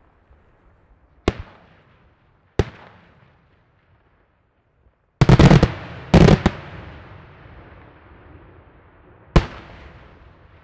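Aerial firework shells bursting. There are single sharp bangs about a second in and again past two and a half seconds, then a loud cluster of rapid reports around five to six and a half seconds, and one more bang near the end. Each report trails off as it fades.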